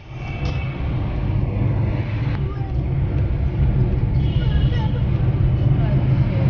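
Steady low rumble of a car being driven, heard from inside the cabin: engine and road noise, starting abruptly and then holding level. Faint voices can be heard underneath.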